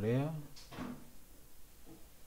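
A man's voice drawing out the end of a word with a rising pitch, followed by a short soft hiss and then a quiet room.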